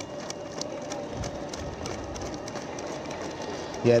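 Running shoes of a pack of marathon runners striking the road in rapid, uneven footfalls, over a steady hum.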